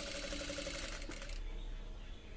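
Industrial lockstitch sewing machine running steadily while stitching a band collar seam, stopping about one and a half seconds in.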